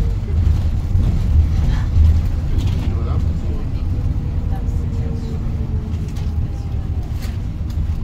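Double-decker tour bus under way, heard from inside the cabin: a steady low engine and road rumble, with a faint whine that slides slowly lower through the middle.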